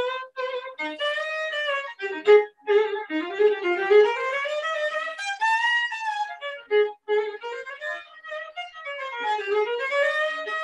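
Solo violin playing a lively tune of short, detached bowed notes with sliding pitches, including a long slide up and back down in the middle.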